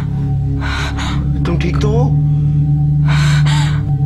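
A woman gasping twice in fright, about a second in and again past three seconds, with a short vocal sound between. A steady low drone of dramatic background music runs under it.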